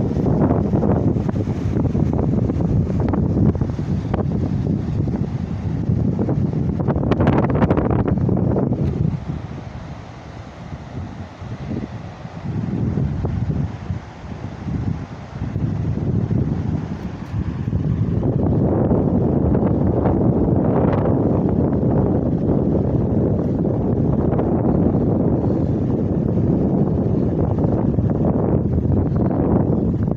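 Wind buffeting a phone's microphone in gusts, easing off for a few seconds about ten seconds in, then picking up again and staying strong.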